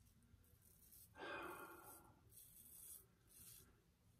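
Faint scraping of a Merkur 34C double-edge safety razor stroking through lathered stubble on the cheek: one stroke about a second in, then two shorter, softer ones near the end.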